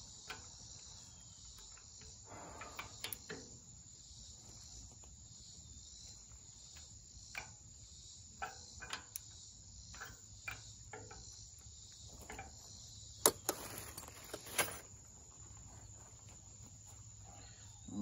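A ratchet wrench and socket clicking and knocking in scattered short strokes as bolts on a tractor's three-point hitch bracket are tightened. Under it runs a steady high-pitched insect chorus.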